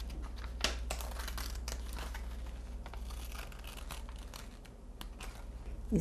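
Scissors snipping through paper-backed fusible interfacing, with the paper sheet rustling and crinkling as it is turned: a run of irregular short snips and rustles.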